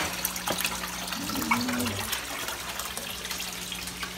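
Pump-circulated pond water splashing and trickling steadily, with a steady low hum underneath.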